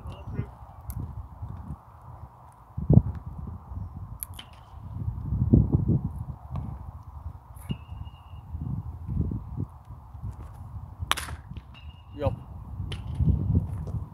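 Wind rumbling on the microphone, with a low thump about three seconds in. About eleven seconds in comes one sharp crack as a pitched baseball reaches home plate.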